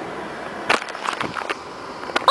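Handling noise from a handheld recording device being grabbed and moved about: a few short knocks and rubs over steady car-interior noise.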